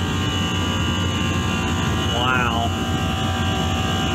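Walk-in freezer condensing unit running: a steady hum of its compressors and condenser fans, with a brief voiced sound about two seconds in.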